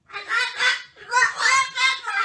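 A high-pitched voice in a run of quick syllables, spoken as the words "I can't work, I got four bed rats."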